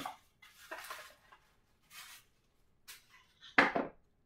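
A small cardboard pipe box being opened and handled by hand: a few brief, soft scuffs and rustles of the lid and packaging.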